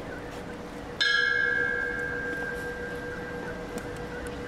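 A single bell struck once about a second in, ringing with a clear pitched tone that fades slowly: a memorial toll after a victim's name in a roll call of the dead.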